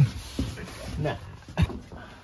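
A young man's short bursts of laughter and a spoken "nah".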